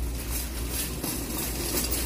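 Shopping cart rolling along a store aisle: a steady low rumble.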